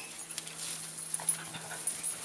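A crowd of puppies milling right around the microphone, panting and snuffling, with small scuffs and clicks. A faint steady hum runs underneath.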